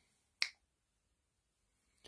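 A single sharp finger snap about half a second in, close to the microphone.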